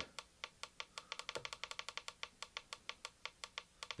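The control keypad of a Black + Decker variable-speed pool pump, sounding a run of short clicks as its down button steps the programmed start time back. There are a few spaced presses, then a quick, even series of about eight a second.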